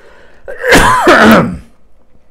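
A man's single loud cough about half a second in, lasting about a second, harsh, with his voice falling in pitch as it ends.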